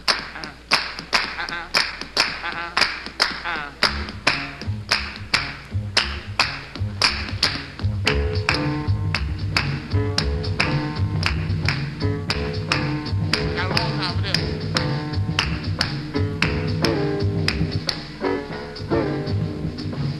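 Jazz quintet opening a tune over a steady, sharp percussive tap about twice a second. An acoustic double bass joins about four seconds in, and chords from further instruments come in about eight seconds in.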